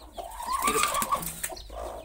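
A broody hen in her clay pot nest gives one drawn-out, slightly rising call lasting just under a second, with a few faint clicks around it.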